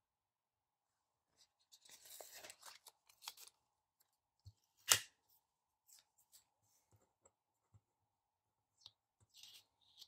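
Paper sticker sheets being handled and a sticker peeled from its backing: short papery crinkles in the first half, one sharp click about five seconds in, then light scattered ticks.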